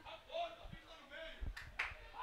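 Faint, distant voices of players and people around a seven-a-side football pitch, with two short sharp knocks about a second and a half in.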